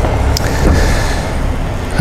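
A car driving past on a residential street, a steady low rumble of engine and tyres.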